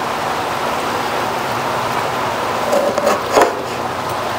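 Steady hiss of breeze on a clip-on microphone, with a chef's knife cutting through a lemon and tapping lightly on a wooden cutting board a few times about three seconds in.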